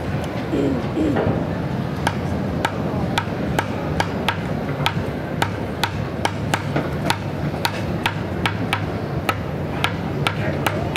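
Percussion on everyday objects: drumsticks striking a plastic water-cooler jug in a steady beat of sharp clicks, about two to three a second, starting about two seconds in.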